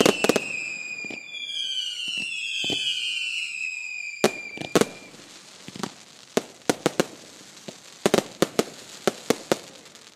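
Fireworks display finale: several shrill whistles sliding down in pitch over the first five seconds, among a run of sharp bangs and cracks that carry on to the end.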